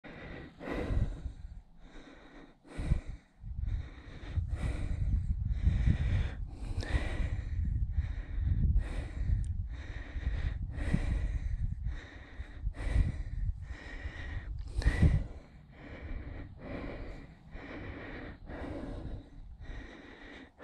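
A cyclist breathing hard in and out, about one breath every second or two, with wind rumbling on the microphone.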